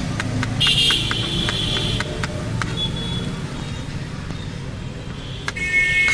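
Knife chopping cucumber on a plastic cutting board: quick, regular taps about four a second that thin out after two or three seconds, over a steady low traffic rumble. A loud high hissing sound fills about a second in, and a short beeping tone sounds near the end.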